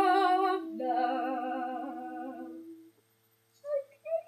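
Two women's voices singing a long held final note together, unaccompanied in the small room, fading away after about three seconds. Near the end comes a brief rising vocal whoop.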